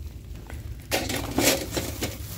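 Clear plastic wrapping crinkling as a hand presses and handles a wrapped stack of molded plastic bowls, in a run of crackles starting about a second in.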